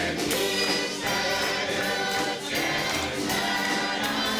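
Gospel choir of men's and women's voices singing together, several parts held at once.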